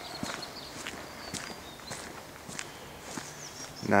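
Footsteps on a gravel road at a walking pace, each step a faint short scuff.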